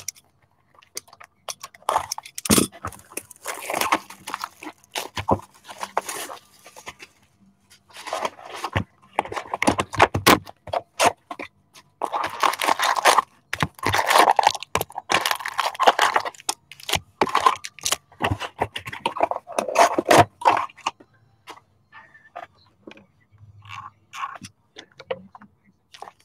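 Shrink-wrap cut and torn off a hockey card hobby box, then the box opened and its foil packs pulled out and stacked. The sound is irregular bursts of crinkling, tearing plastic and rustling packs, broken by small clicks and taps.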